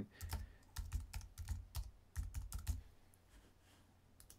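Typing on a computer keyboard: a quick run of about a dozen key presses lasting some two and a half seconds, then the typing stops.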